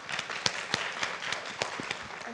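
Audience applauding: light, scattered clapping with individual claps standing out.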